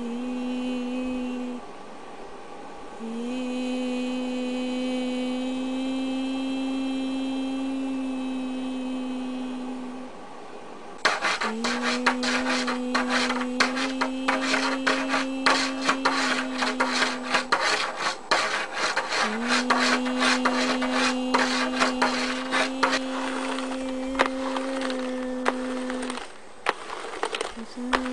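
A person humming one long, steady low note, breaking off briefly every several seconds and starting again at about the same pitch. From about eleven seconds in, a hand rubbing and scratching over objects adds a rapid, uneven scraping clatter under the hum.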